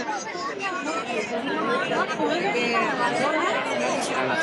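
Chatter of many people talking at once at crowded outdoor café tables: overlapping voices with no one clear speaker.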